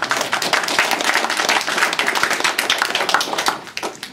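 Audience applauding with a dense patter of hand claps that dies away just before the end.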